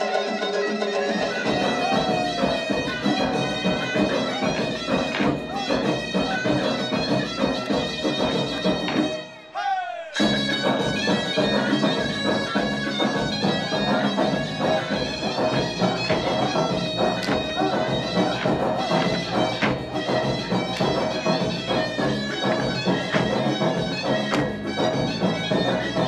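Folk dance music: a reedy wind instrument plays the melody over a steady drone, with a beat. It breaks off briefly just before ten seconds in and then starts again.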